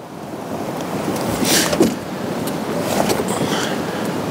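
A 23Zero Armadillo A3 hardshell roof top tent being lifted open, its fabric rustling and a few light clicks from the shell, under a loud rush of wind on the microphone that swells over the first second or so and then holds steady.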